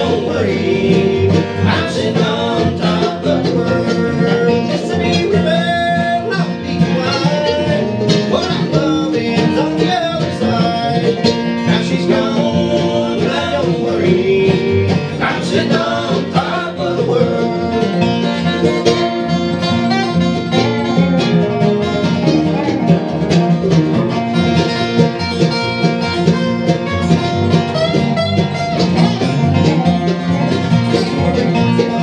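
Live acoustic bluegrass band playing: mandolin, acoustic guitar, upright bass and a dobro played lap-style with a slide bar, with voices singing over the strings.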